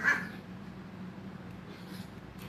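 A dog off-camera gives one short bark right at the start, over a steady low hum.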